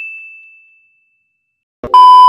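A single bell-like notification ding from a subscribe-button animation, fading out over most of a second. Near the end a click and then a loud, steady test-tone beep start with a TV colour-bars glitch transition.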